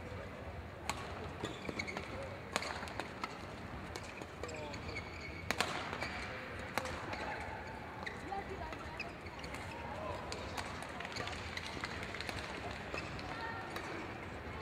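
Badminton rally: sharp racket strikes on the shuttlecock at irregular gaps of one to four seconds, the loudest about five and a half seconds in. Shoes squeak on the court floor and voices murmur in the hall between the strikes.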